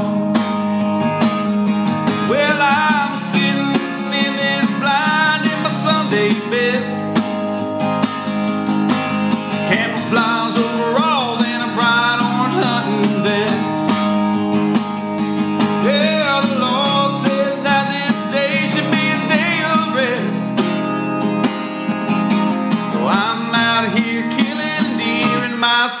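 Acoustic guitar strummed steadily, with a man singing a country song over it.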